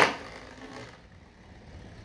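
Hyperion Burn Beyblade Burst top spinning on its flat attack-mode tip in a plastic stadium, a faint steady whir. It follows a short loud noise from the launch at the very start, which dies away within half a second.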